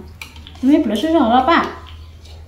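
A metal spoon tapping and scraping in a plastic food bowl, a few light clicks. About halfway through, a short sing-song vocalization rises and falls for about a second and is the loudest sound.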